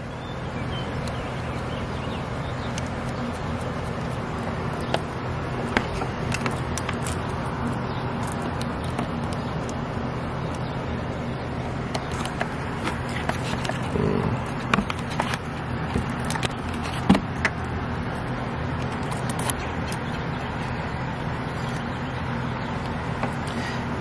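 Scattered small clicks and taps of clutch cable and engine parts being handled on a dirt bike, over a steady low mechanical hum.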